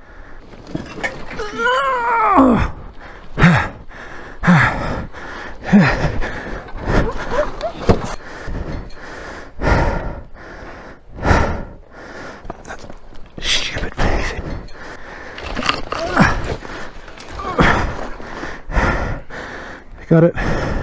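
A person breathing hard in ragged gasps, with a strained, wavering groan about two seconds in, from the effort of lifting a fallen heavy motorcycle.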